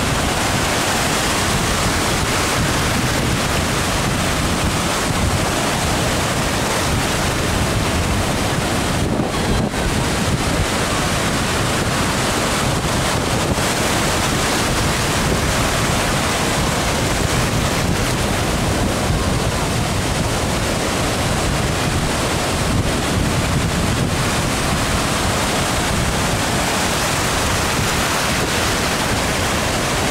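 Ocean surf breaking and washing in at the shoreline, a steady loud rushing, with wind buffeting the microphone.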